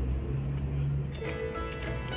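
A steady low hum, then plucked-string folk music starting about a second in, with quick regular strokes over several held notes.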